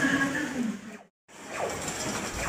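Indistinct background noise with a faint wavering voice-like hum. About a second in, the sound drops out to dead silence for a moment at an edit cut, then steady background noise returns.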